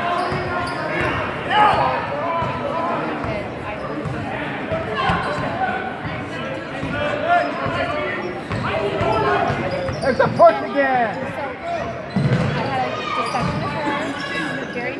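A basketball being dribbled on a hardwood gym floor, with indistinct shouts and chatter from players and spectators echoing in the large gym.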